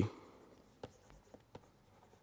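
Faint tapping and scratching of a stylus on a pen tablet as a word is handwritten, with a few light clicks, the clearest a little under a second in.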